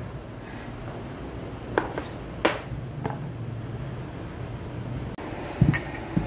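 A few sharp knocks of a kitchen knife on a wooden cutting board as small calamansi limes are cut, over a steady low hum. A single heavier knock near the end.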